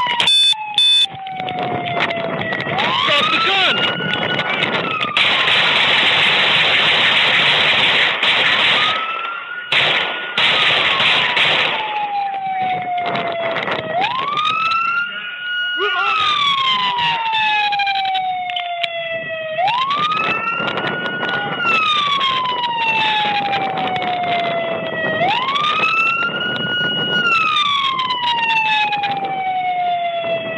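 Police car siren on a slow wail, each cycle rising quickly and then falling slowly, repeating about every five or six seconds. A loud rushing noise runs under it for roughly the first twelve seconds.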